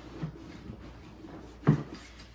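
Fabric backpack being packed by hand: soft rustling and shuffling as a bag is pushed inside, with one short, sharp thump near the end.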